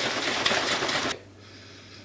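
A plastic shaker bottle of pre-workout drink being shaken hard, a loud sloshing rattle that stops abruptly about a second in.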